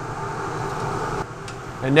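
Steady blowing hum of a Laars Mascot FT gas boiler running at low fire, its combustion fan and burner going. The higher hiss drops back a little past halfway.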